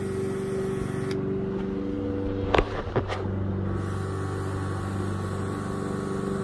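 Cordless handheld paint sprayer's small built-in compressor running with a steady hum while spraying a coating. The airflow hiss drops away about a second in and returns after a couple of seconds, with two short clicks about half a second apart in the middle.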